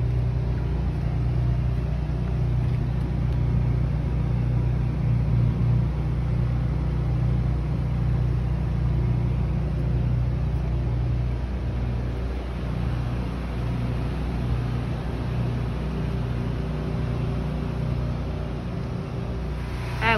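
A truck's engine running steadily, a continuous low rumble that eases slightly in the second half.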